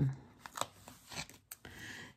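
Faint handling of a glossy plastic sticker sheet: a few small clicks and crinkles as it is flexed and a sticker is lifted off with tweezers.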